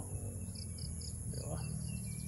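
Insects trilling steadily at a very high pitch, with a run of about seven short, high chirps, some four a second, through the middle. A low steady hum runs underneath.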